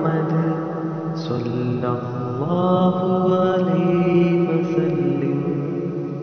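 A voice chanting salawat, blessings on the Prophet Muhammad, drawing out long held vowels with no clear words. The pitch rises about two and a half seconds in, and the chant fades slightly near the end.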